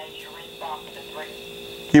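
A pause in speech over a steady hum made of a few fixed tones, with faint, indistinct voice-like sounds; a man's voice starts again right at the end.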